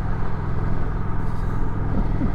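Kawasaki Vulcan 900 V-twin motorcycle engine running steadily at a low cruising speed, with wind rushing over the rider's microphone.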